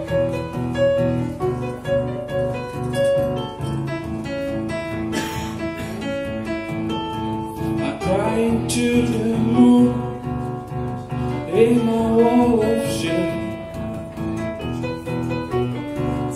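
Nord Stage 2 stage keyboard playing a steady pattern of repeated chords. A man's voice sings drawn-out wavering phrases over it about eight and twelve seconds in.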